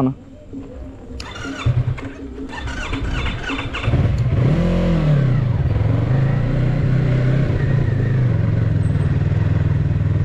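Yamaha MT-03 parallel-twin motorcycle engine starting about four seconds in, revving up and back down once, then running steadily.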